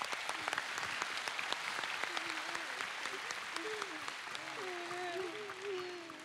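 Studio audience applauding, a dense steady patter of claps that eases off near the end. From about two seconds in, a wavering voice sounds over the clapping.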